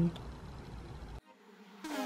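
Faint room background hiss. It cuts off to a moment of near silence, and about two seconds in pop music begins with a falling, sliding tone.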